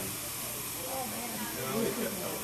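A steady hiss, with faint voices murmuring underneath.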